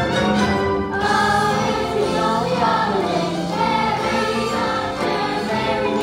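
Ensemble of young performers singing a song together in chorus over musical accompaniment.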